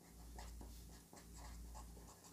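Faint scratching of a marker pen writing on paper, in two short runs of strokes.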